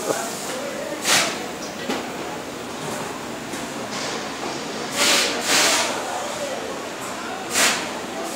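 Short bursts of compressed air hissing, about three times (a longer one around the middle), over the steady background noise of a busy workshop with faint voices.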